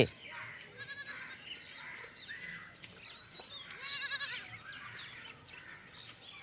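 Village ambience with a goat bleating: a short bleat about a second in and a longer, louder one about four seconds in, with birds chirping.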